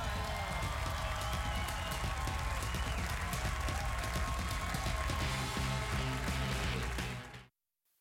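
Studio audience applauding over upbeat play-off music with a steady bass line and beat. Both cut off suddenly to silence about a second before the end.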